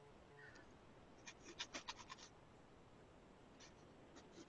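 Faint scratching of a Derwent sketching pencil scribbling on mixed media paper: a quick run of short strokes about a second and a half in, and a few more near the end, in otherwise near silence.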